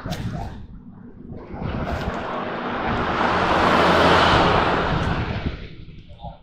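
A vehicle passing on the street: tyre and road noise swells to a peak about four seconds in and fades away.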